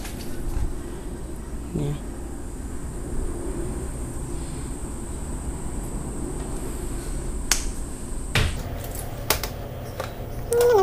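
Steady low background hum and a faint high whine, with two sharp clicks about a second apart near the end.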